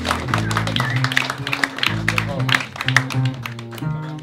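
Upright double bass plucking low notes while the audience claps and applauds.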